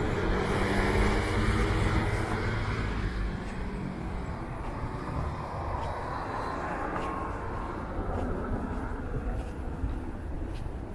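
A motor vehicle passing, loudest in the first two seconds or so and then fading, leaving a steady low rumble of traffic.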